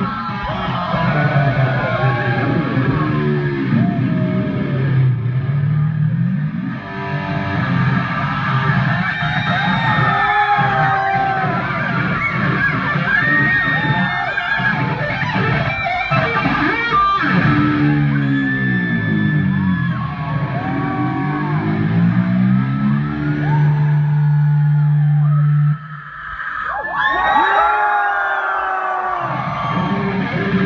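Rock band playing live, with electric guitar to the fore and many bending notes. Near the end a long held low note stops abruptly, then the guitar comes back in.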